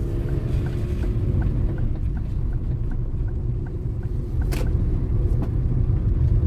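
A car's low rumble of engine and tyres on wet streets, heard from inside the cabin, with a faint steady ticking about three times a second. A single sharp thump comes about four and a half seconds in.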